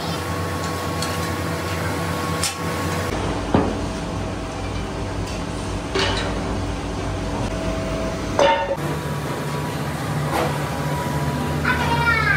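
Steady low machine hum with three sharp metallic knocks a few seconds apart.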